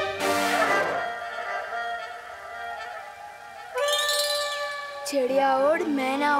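Comic background music: a quick whoosh in the first second, then a whistle-like note that rises and falls about four seconds in, and wobbling, sliding notes near the end.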